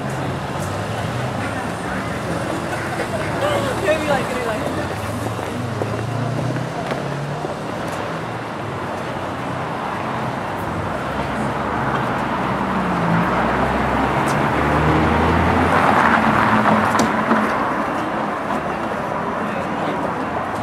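Downtown street ambience: car traffic moving along the street, with passers-by talking in the background. A vehicle passes closer and louder about two-thirds of the way through.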